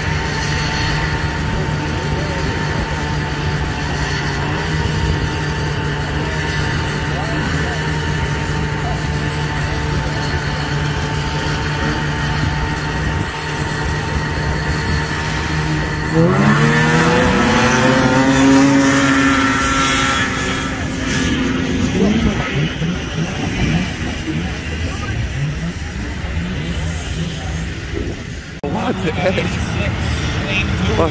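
Vintage two-stroke snowmobile engines idling at a drag-race start line, then revving hard about sixteen seconds in on the launch: the pitch climbs steeply and holds for several seconds before fading away. Another engine revs up near the end.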